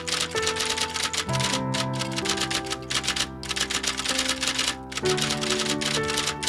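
Rapid typewriter keystroke clatter as a sound effect, with brief pauses between bursts. It plays over background music of sustained chords that change about a second in and again near the end.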